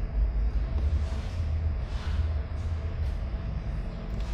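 A steady low rumble with a faint hum above it, unchanging throughout.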